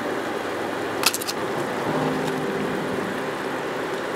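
Metal tongs clink sharply against a cast iron skillet about a second in, over the steady hiss of a wine marinade simmering in the pan and a low hum.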